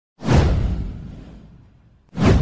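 A whoosh sound effect: a rush with a deep rumble underneath that swells within a fraction of a second and fades away over the next second and a half.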